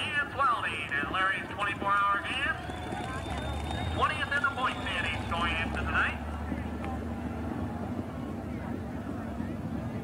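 Dirt-track modified race cars' engines racing past at full throttle, the pitch swooping up and down as cars go by. About six seconds in, the engine noise settles into a steadier, quieter drone.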